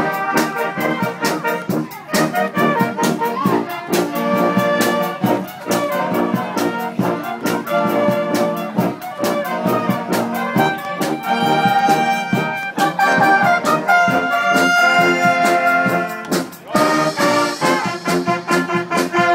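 Brass-led wind band of trumpets, trombones, tubas and sousaphone playing a tune together over a steady, regular percussion beat.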